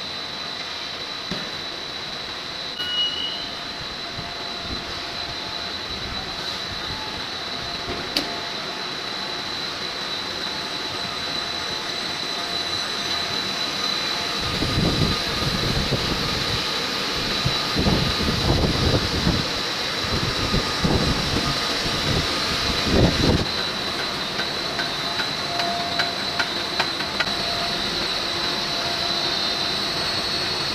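Foam extrusion line running: steady machinery noise with a constant high-pitched whine. From about halfway through to near the end, irregular low rumbles and thumps sound over it.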